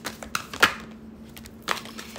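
Tarot cards being shuffled by hand: a few separate clicks and flicks of the card edges, the sharpest about half a second in and another near the end.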